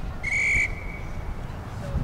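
Rugby referee's whistle: one short, clear blast about a quarter second in, fading out before a second in.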